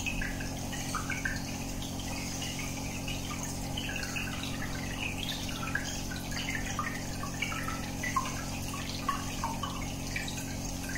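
Aquarium air bubbler: a stream of air bubbles gurgling and popping at the water surface in quick irregular little blips, over a steady low hum.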